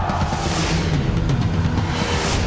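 Movie-trailer sound effects: a deep, steady rumble with a rushing whoosh that swells and fades about half a second in.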